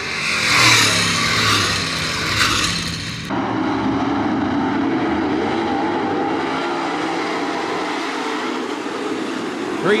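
Dirt late model race cars' V8 engines: a loud pass of a car running close along the wall for about three seconds, then a sudden change to a duller, steadier sound of the field's engines running at lower speed.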